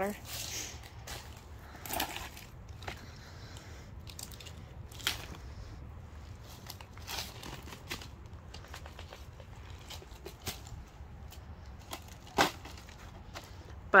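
Dry fallen oak leaves and mulch rustling and crackling in scattered short bursts, with one sharp click near the end.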